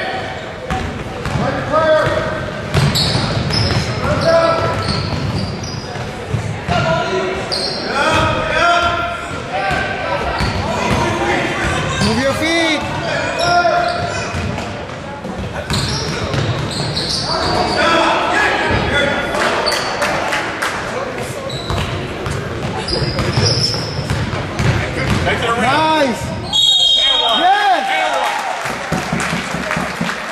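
Basketball game in a gymnasium: a ball bouncing on the hardwood court amid shouting from players and spectators, echoing in the large hall.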